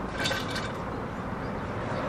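Steady outdoor background noise, the hum of road traffic, with a few faint light clicks about a quarter second in.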